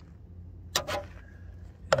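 Two brief sharp taps of a small screwdriver against the plastic tail-light housing, the second louder, over a low steady hum.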